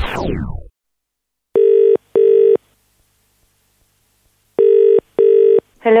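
British telephone ringing tone heard down the line: two double rings, about three seconds apart, before the call is answered.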